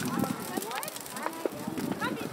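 Crowd chatter: many people talking at once around a large outdoor bonfire, with short clicks and crackles scattered through the voices.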